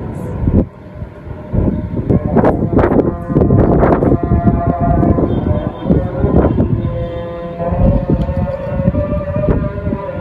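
Wind buffeting the microphone in irregular gusts. A faint, distant, steady held tone sits under it from about two seconds in.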